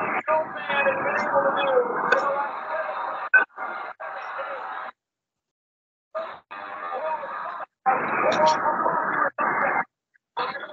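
Muffled voices and crowd sound from a television wrestling broadcast, picked up by a video-call microphone and cutting out to silence several times.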